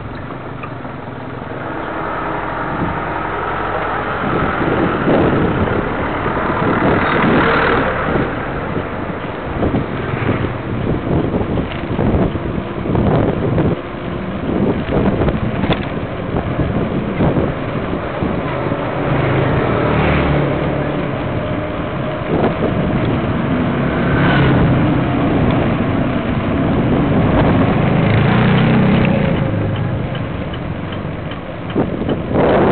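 Riding noise from a bicycle on a paved street, picked up by a handlebar-mounted camera: a steady rushing with frequent short knocks and rattles from the mount over the road surface.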